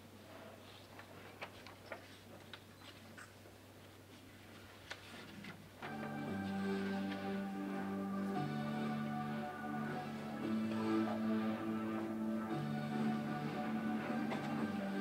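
A few seconds of quiet with scattered small clicks from the room, then a small mixed choir begins singing about six seconds in: slow, sustained chords, each held for a second or two before moving on.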